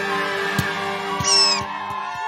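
Gentle children's cartoon music with held notes and light plucked ticks. About a second in comes a short, high, squeaky cartoon animal call, a cartoon bunny's voice.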